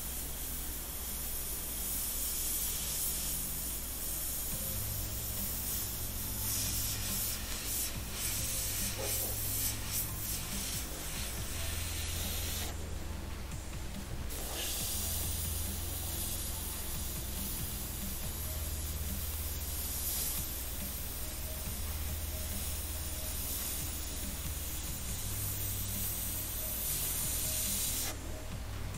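Gravity-feed airbrush spraying paint in a steady hiss, cutting out for about two seconds midway and then spraying again.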